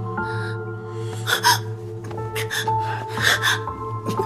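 Soft drama score music with long held notes, over several short breathy gasps from the two actors struggling on the bed.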